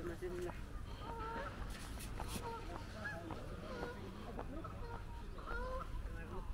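Geese honking: many short calls, one after another, over a steady low rumble.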